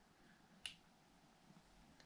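A single short, sharp click a little over half a second in, from the switch of a handheld diving flashlight being pressed while cycling its light modes; otherwise near silence.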